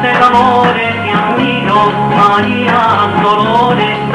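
Recorded band music with guitar, a melody line and a bass that pulses in a steady beat.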